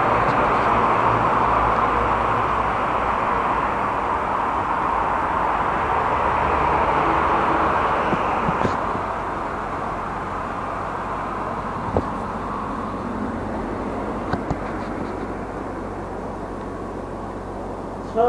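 Steady rushing vehicle noise from tram and road traffic. It is louder for the first half and eases off about halfway through, with a few light clicks later on.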